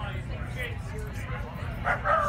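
A dog barks once, loudly, near the end, over a steady background of crowd chatter.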